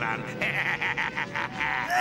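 A cartoon sorcerer's high, quavering cackle of laughter in quick, rapid pulses.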